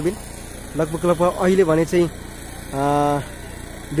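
A man's voice talking, then a held "uhh" about three seconds in, over a faint steady low engine hum.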